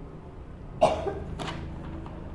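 A man coughing twice, just over half a second apart; the first cough is the louder.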